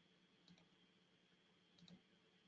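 Near silence with faint computer mouse clicks: one about half a second in and two close together near the end.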